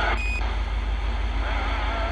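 Cobra CB radio receiving on an open channel: a short beep just after a transmission ends, then steady static hiss over a low hum, with faint warbling distant-station voices coming back under the noise near the end.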